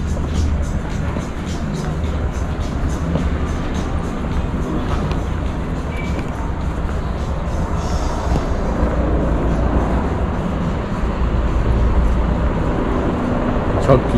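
Pedestrian-street ambience heard while walking: a steady low rumble with indistinct voices and faint music, and regular footsteps on stone paving.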